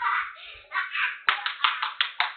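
A man clapping his hands in a fast, even rhythm, about five or six claps a second, starting a little past halfway. The sound is thin and cut off at the top, as through a security camera's microphone.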